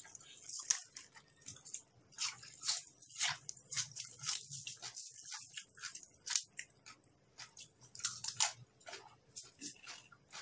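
Close-up chewing of raw beef and fresh vegetables: a fast, irregular run of short mouth clicks and crackles.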